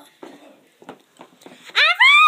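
Faint rustling and handling clicks, then near the end a child's loud, high-pitched squeal that rises in pitch.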